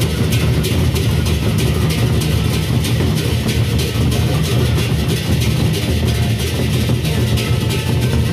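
Gendang beleq ensemble playing: large Sasak barrel drums beaten with sticks in a fast, dense rhythm over a deep, continuous drum rumble, with cymbal strokes on top.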